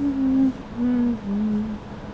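A person humming a slow tune in held notes of about half a second each, the last notes stepping down in pitch.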